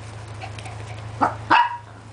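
A four-week-old miniature pinscher puppy giving two short, high yips a little past a second in, the second louder.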